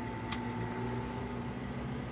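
Box fan running with a steady hum and whoosh, its speed knob clicking once about a third of a second in as it is turned up to high.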